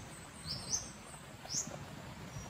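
Faint, short, high chirps of a small bird, each rising in pitch: two close together about half a second in and a third about a second later.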